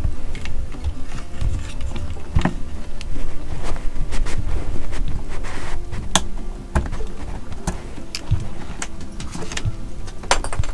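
Several sharp snips of diagonal cutters cutting plastic zip ties and handling wires, over a low rumble and faint background music.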